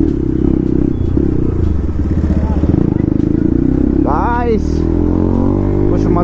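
Bajaj Pulsar RS 200's single-cylinder engine running steadily while cruising, heard from the rider's seat with wind noise over it. A short rising tone cuts in about four seconds in.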